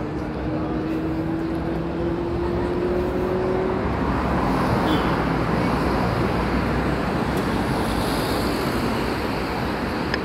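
Road traffic on a city street: steady noise of cars driving past, with a low tone that rises slowly over the first few seconds and then fades.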